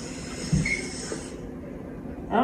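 Aerosol cooking spray hissing into a metal muffin tin, cutting off sharply a little past halfway. A soft knock comes about half a second in.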